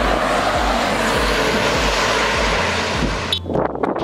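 A steady, loud rushing noise over background music with a regular bass beat. The rush stops suddenly about three seconds in.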